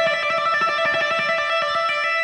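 Electric guitar playing a rapid trill on the high E string with the fretting hand alone, hammering on and pulling off between two notes. The notes run together at an even level.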